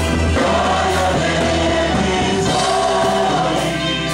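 Gospel choir singing through microphones, with a male lead voice, over a band with a steady bass line.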